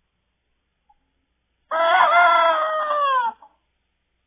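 A rooster crowing once, one call of about a second and a half that drops in pitch at the end.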